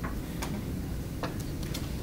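About half a dozen small, sharp clicks at irregular intervals over a steady low room hum.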